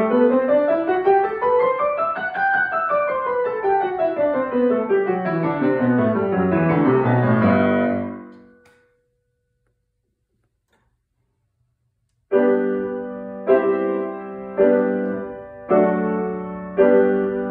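Grand piano played solo: a fast run of notes climbs and then descends in a smooth scale-like sweep and fades out. After a few seconds of silence come single chords struck about once a second, each left to ring and decay.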